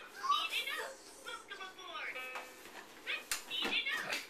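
A baby babbling in high, wavering vocal sounds, with a single knock a little after three seconds in.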